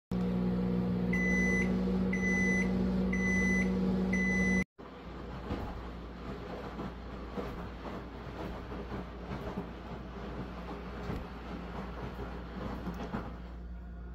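Microwave oven running with a steady hum and beeping four times, about a second apart. The hum cuts off suddenly, followed by a softer stretch of irregular crackling and light clicks.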